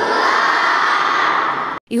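Many children shouting together at once, a loud crowd of young voices that cuts off abruptly near the end.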